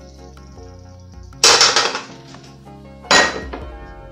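Two loud clattering knocks of a small glass bowl against hard surfaces, about a second and a half apart, each ringing briefly. Steady background music plays under them.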